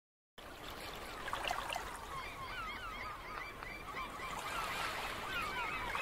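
A flock of birds calling over and over, many short calls overlapping, over a steady hiss of surf.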